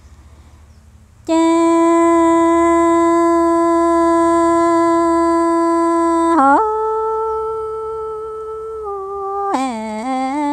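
A woman singing Hmong sung poetry in long, steady held notes. One note starts about a second in and holds for about five seconds. It then slides up to a higher held note, steps down, and near the end drops lower with a wavering pitch.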